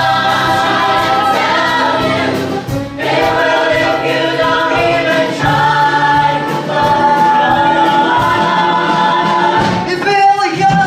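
A large stage cast singing together over accompanying music, loud and steady, with a brief break about three seconds in.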